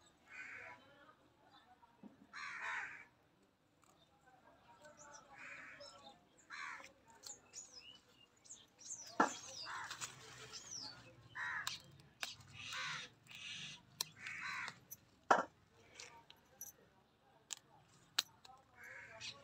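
Crows cawing over and over, a harsh call every second or two, with smaller birds chirping and a couple of sharp clicks partway through.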